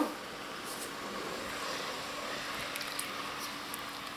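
Faint steady hiss and low hum of a pot of soup simmering on the stove, with a few light clicks as it is stirred with a wooden spatula.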